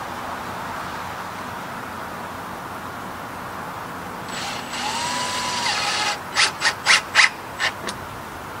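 Cordless drill driving screws through a metal sign into a wooden fence: the motor runs for about two seconds about halfway in, then gives about six short, sharp bursts near the end.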